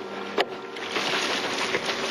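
Gasoline poured from a gas can, splashing steadily, with a single knock about half a second in.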